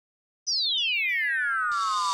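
A high electronic synthesizer tone sweeping steadily downward in pitch, with echoing repeats of the sweep, and a hiss of noise coming in near the end.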